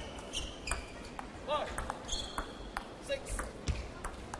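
Table tennis rally: the celluloid ball clicking sharply off the paddles and table at an irregular pace, with short squeaks of the players' shoes on the court floor.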